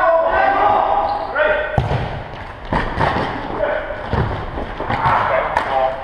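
Indoor football being kicked and bouncing on a sports-hall floor: a string of sharp thuds, echoing in the hall, from about two seconds in until near the end. Players shout in the first second or so.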